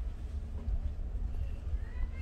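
High-heeled footsteps clicking on a paved street over a steady low rumble.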